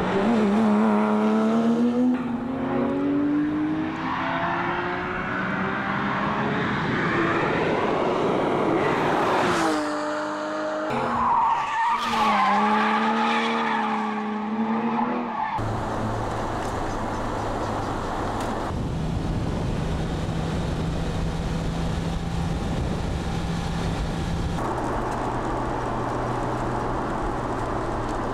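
Porsche 911 GT3 RS's naturally aspirated flat-six engine accelerating hard, its note climbing in pitch through the gears. About twelve seconds in the revs rise and fall, and for the last ten seconds the engine holds a steady note.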